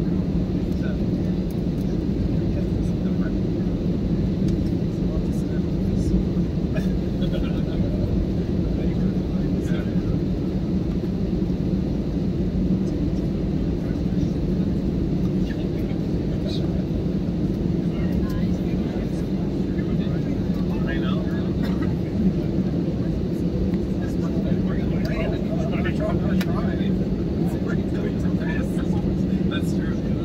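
Steady cabin noise of a jet airliner taxiing on the ground: an even, constant rumble with a low hum from the engines at idle.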